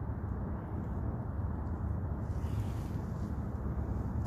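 Steady low outdoor background rumble with no distinct events, the kind of hum that distant traffic or wind on a microphone makes.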